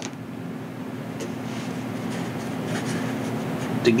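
Craft knife blade scraping and cutting into the bead foam of a model wing, shaving a retract pocket a little deeper; light, faint scratching over a steady low hum.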